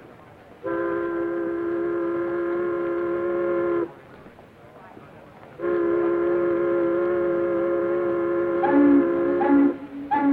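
A horn with a several-note chord sounds two long blasts of about three and four seconds. Near the end, a different, lower horn honks in short repeated beeps.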